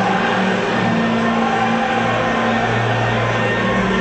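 Electronic dance music played over a football stadium's public-address system, with a held bass note that breaks off and returns every second or two.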